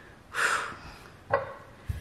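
A short, sharp exhale through the nose, then a click and a soft low thump as a glass hot-sauce bottle is picked up from the table.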